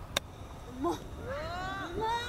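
A single sharp click of a golf club striking the ball on a short chip shot, followed by a person's drawn-out exclamation that rises and then falls in pitch.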